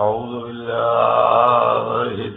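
A man's voice chanting a long, drawn-out Arabic invocation on a steady pitch with a slight waver, opening a sermon's recitation. It starts abruptly after a brief dropout where the recording is spliced.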